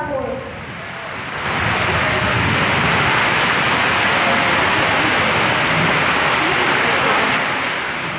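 Audience applauding. The clapping swells about a second and a half in, holds steady, and dies away near the end.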